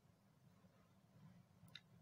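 Near silence: faint steady low room hum, with one brief faint click shortly before the end.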